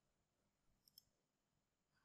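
Near silence, with two faint clicks close together about a second in: a computer mouse clicking.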